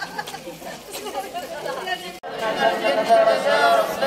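Crowd chatter: many voices talking over one another. About two seconds in there is a sudden break, and after it the voices are louder and closer.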